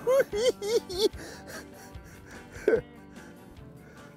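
A man laughing in a quick run of about four bursts in the first second, over steady background music.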